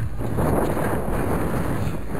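Wind blowing across the camera's microphone, a steady noise with gusty unevenness, as a storm comes in.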